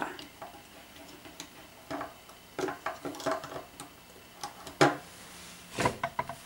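Irregular small clicks and taps of a loom hook and rubber bands against the clear plastic pegs of a Rainbow Loom as bands are pulled forward, the loudest a little before the end.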